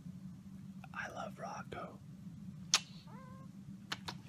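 A man whispering softly to a tabby cat, then a click and a brief, faint meow from the cat about three seconds in, over a low steady hum.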